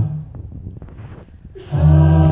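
An a cappella vocal group's held chord cuts off at once. About a second and a half of low room noise with a few faint clicks follows, and then the group comes back in together on a full chord near the end.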